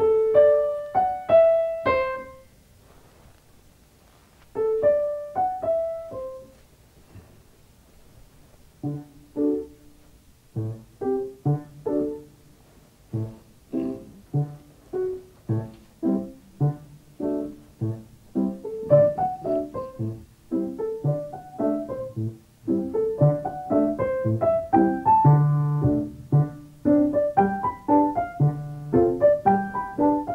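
Grand piano: five single notes picked out in the upper register, about half a second apart, with a few notes answering shortly after. From about nine seconds an improvised piece is built on those five notes, melody over bass notes, growing fuller toward the end.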